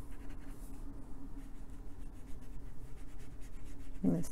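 Water brush pen working Inktense ink on a plastic palette sheet and then across the paper: soft, irregular scratchy brush strokes over a steady low hum.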